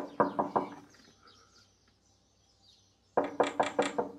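Knocking on a door in two quick bursts: about four knocks at the start, then about five more near the end.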